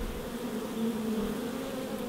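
A crowd of honey bees buzzing at a hive entrance: a steady, even hum.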